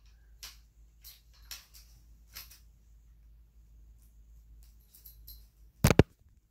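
Faint scattered clicks and rustles of hands handling a speargun, then one loud sharp knock near the end as the camera is grabbed.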